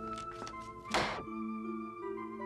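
Soft drama underscore with held tones. About a second in there is a single loud thunk of a hand setting something down on a tabletop, with a few faint taps before it.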